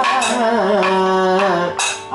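Kathakali chant: a man sings an ornamented, gliding melody that settles into a held note and breaks off near the end. A steady shruti box drone sounds under the voice. A small hand-held metal percussion disc is struck at the start and again near the end.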